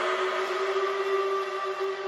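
Music: a held electronic synth chord of several steady notes, slowly fading, in a quiet stretch of a trap beat.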